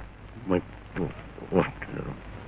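A man's voice making three short grunt-like sounds about half a second apart, each falling in pitch.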